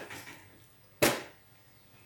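A person eating a big bite of a pan-fried bread snack: a soft sound at the start as the food goes in, then one sharp knock about a second in.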